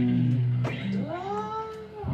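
Live rock band between phrases: a held low bass note, then, about a second in, a single pitched tone that slides up and back down in pitch.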